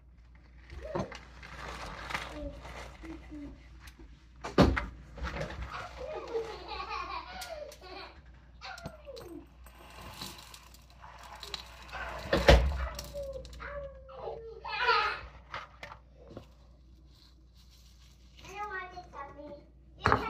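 Dried basil salt being scraped off a metal baking sheet and poured through a plastic funnel into a glass jar, with two sharp knocks, about five and twelve seconds in. Children are talking in the background.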